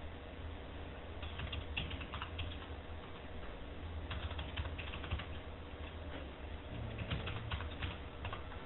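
Typing on a computer keyboard: three runs of quick keystrokes, each a second or so long, over a steady low hum.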